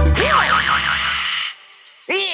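Cartoon sound effect for a magic zap: a wobbling, warbling boing-like tone over a fizzing hiss, as the backing music stops. It cuts off about one and a half seconds in.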